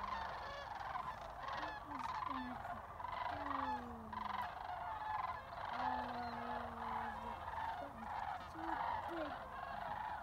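A large flock of sandhill cranes calling in flight overhead: many overlapping calls without a break.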